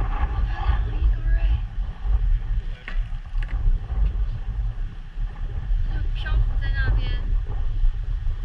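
Steady low rumble of wind buffeting the microphone over open water, with brief voices near the start and again about seven seconds in.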